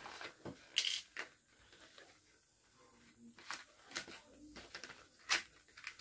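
A small white cardboard box being opened and handled by hand: a scattering of short clicks, taps and rustles of card a second or so apart.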